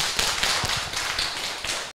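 Audience applauding, many hands clapping at once; the applause cuts off suddenly near the end.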